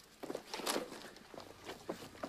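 Footsteps of two hikers walking on a dirt forest trail: soft, irregular steps.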